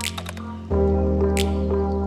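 Background music: sustained chords over a steady low bass, getting louder about two-thirds of a second in, with a few sharp click-like hits.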